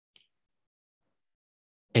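Near silence, broken by one faint, short click just after the start. A man starts speaking again at the very end.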